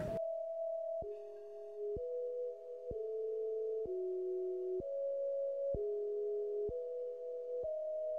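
Soft background music of sustained electronic tones: a held upper note over a lower note that steps to a new pitch about once a second, with a faint click at each change.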